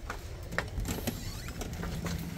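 Push bar (panic bar) of a glass exit door pressed and the door pushed open: a few clicks and knocks from the latch and door over a low rumble. A steady low hum comes in near the end.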